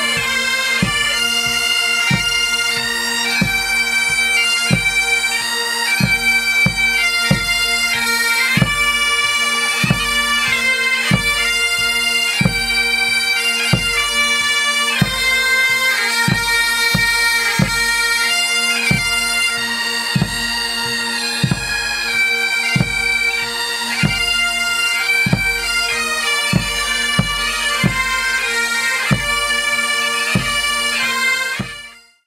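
Pipe band of Great Highland bagpipes playing a tune: steady drones under the chanter melody, with a bass drum beating about twice a second.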